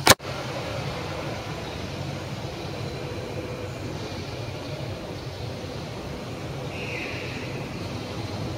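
Steady low background rumble, with a sharp click right at the start.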